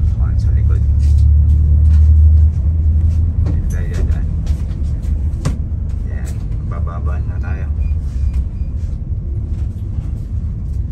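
Double-decker bus running along the road, heard from inside: a steady low engine and road rumble that eases a little after about two and a half seconds.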